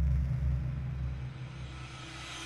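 Logo-intro sound design: a deep, steady rumble that slowly fades while a hissing swell builds in the highs, rising toward a hit.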